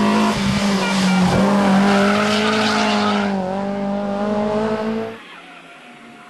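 BMW E30 M3 rally car's four-cylinder engine running hard at high revs, its pitch sinking slowly, with tyre noise hissing in the middle. The engine sound cuts off abruptly about five seconds in.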